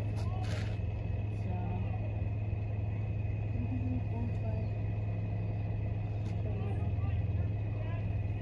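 A steady low engine hum throughout, with a brief scraping burst about half a second in.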